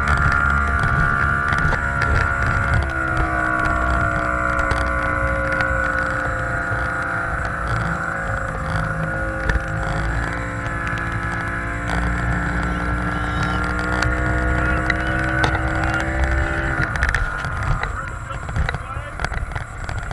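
Motorboat engine running at speed over a heavy rumble of water and wind. Its pitch steps up about three seconds in and shifts again around ten seconds, then the engine note drops away near the end.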